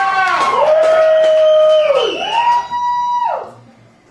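Electric guitar through an amplifier holding a few long notes, each bending down in pitch as it ends, dying away near the end as the song closes.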